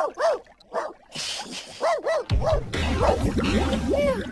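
A cartoon dog giving a string of short yips and whimpers, each a quick rise and fall in pitch. A low rumble comes in a little past halfway.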